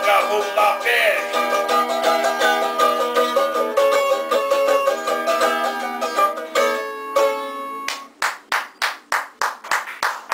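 Cavaquinho strummed briskly in a steady rhythm, ending on a chord that rings out and fades about seven to eight seconds in. Then evenly spaced sharp beats take over, about two or three a second.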